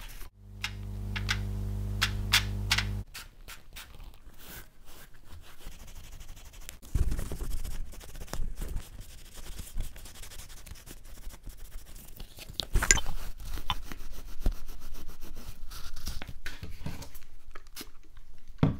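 Gloved hands wiping and handling leather-covered watch-box pieces with a microfibre cloth: irregular rubbing and scuffing with occasional light knocks on a wooden bench. At the start a small motor hums steadily for about three seconds, then cuts off.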